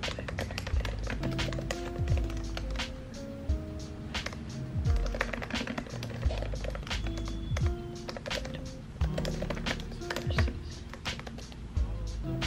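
Quick, irregular clicking of typing on a laptop keyboard over background music with a steady beat and held low notes.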